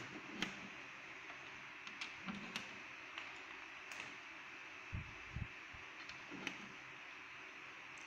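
Scattered light clicks and taps of banana-plug patch cords being pushed into the sockets of a circuit trainer panel and handled, with a couple of low thumps about five seconds in, over faint steady hiss.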